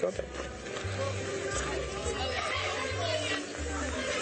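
Indistinct voices and chatter picked up by a police body-camera microphone, over music with a low bass line that changes note every half second or so.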